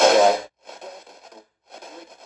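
Radio-ITC spirit box sweeping across radio frequencies, putting out short chopped bursts of hissy, voice-like radio audio: a loud burst at the start, then two fainter stretches broken by brief gaps.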